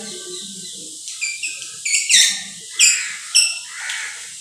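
Chalk squeaking on a blackboard while writing: about six short, high-pitched squeals over two and a half seconds, each bending upward.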